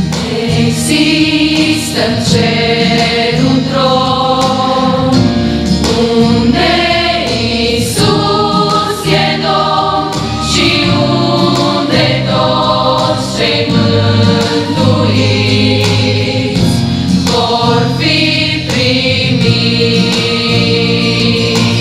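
A large mixed choir of women's and men's voices singing a gospel hymn in full chords, steady and continuous.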